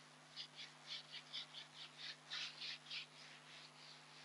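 Whiteboard eraser rubbed back and forth on a whiteboard: about a dozen quick, faint scrubbing strokes, about four a second, stopping about three seconds in.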